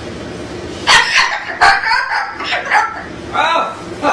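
A white cockatoo calling: a run of five or six short, loud calls, beginning about a second in.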